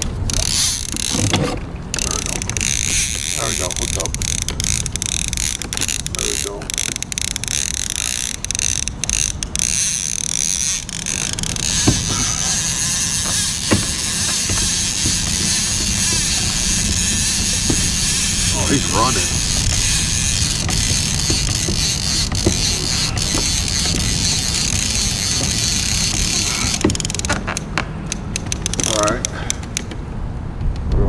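Trolling reel drag clicking rapidly, then buzzing steadily for about fifteen seconds, then clicking again near the end: a hooked fish taking line off the reel.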